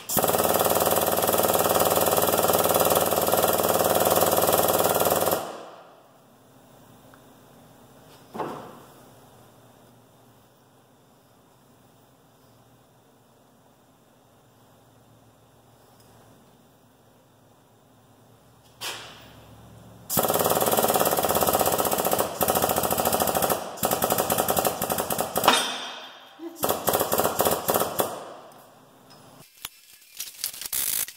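Air-over-hydraulic pump of a shop press running with a rapid chatter for about five seconds, stopping, then running again in stuttering bursts for the last ten seconds while pressing a differential out of its ring gear. A single sharp crack sounds during the second run.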